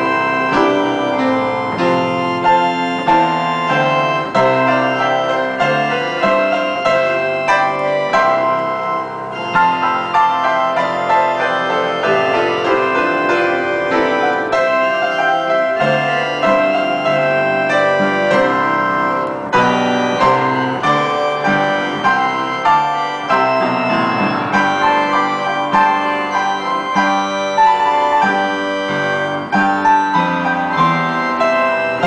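A church pipe organ and a piano played together, a continuous piece with many quick notes over held tones.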